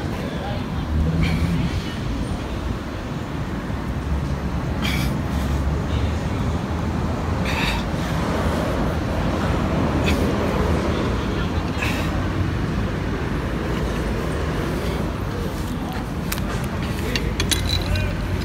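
Outdoor street background: a steady rumble of traffic and wind noise with faint voices, broken by a few short clicks.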